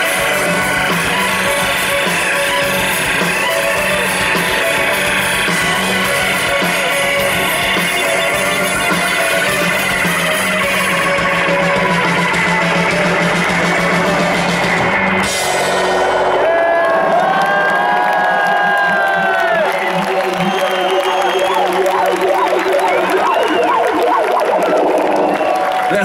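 Live rock band with violin, guitars and drums playing loudly through a large outdoor PA, heard from within the crowd. The song ends with a final hit about fifteen seconds in, and the crowd cheers and whoops.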